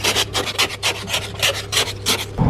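Hand-held ice scraper scraping frost off a car windscreen in quick, even strokes, about five a second.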